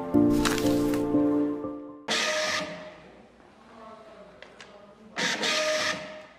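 A short music jingle ends about two seconds in. Then an Argox iX4-350 thermal-transfer label printer runs twice, each time for about half a second, printing a label and feeding it out through its dispenser, which peels the label from its backing.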